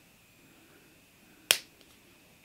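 Xuron flush cutters snipping through a 0.8 mm (20 gauge) round wire tail: one sharp click about one and a half seconds in.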